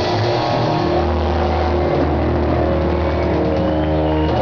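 Live blues-rock band holding out the song's final chord: distorted electric guitars and bass ringing on steady held notes over a wash of drums and cymbals.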